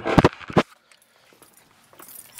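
A few sharp knocks and clicks close together in the first half-second, from the handheld camera being bumped as it is moved quickly out of the stripped car body, then almost quiet.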